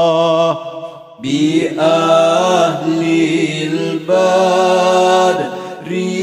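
Sung Islamic sholawat: Arabic devotional chanting with long, held, wavering notes. It breaks off briefly about a second in, then a new phrase begins.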